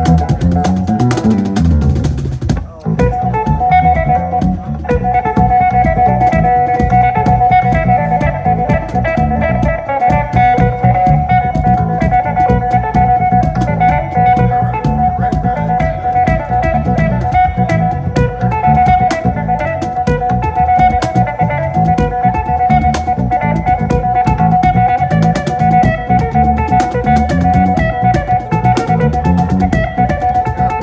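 Live improvised instrumental trio: an amplified cigar box guitar, a large bass cigar box and a cajon slapped by hand. After a brief drop about two and a half seconds in, a repeated high guitar note rings over a steady driving cajon beat.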